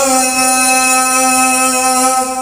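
A man's voice holding one long sung note at a steady pitch through a microphone and PA loudspeakers, in a chanted devotional syair.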